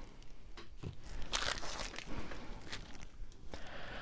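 Faint rustling and light taps of a small stack of trading cards being handled and set down on a desk, with one brief scratchy rustle about a second and a half in.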